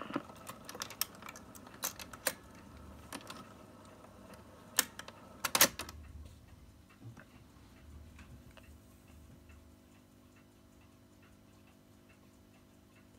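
Collaro record changer after the song has ended: the stylus gives crackle and scattered clicks, with a cluster of louder clacks about five seconds in as the tonearm lifts. After that a faint steady motor hum with soft, evenly spaced ticks.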